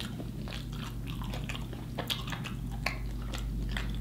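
Close-miked chewing of a mouthful of fish sandwich: irregular wet clicks and smacks from the mouth, over a steady low electrical hum.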